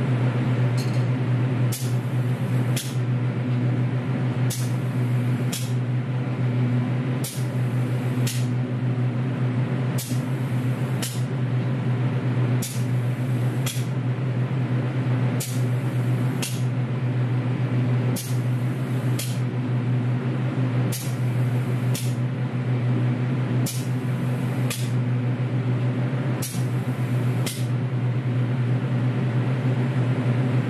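Steady hum of a spray booth's built-in extraction fan, with brief high hisses in pairs about a second apart, repeating roughly every three seconds, as the robot arm's spray gun sprays clear coat onto an alloy wheel.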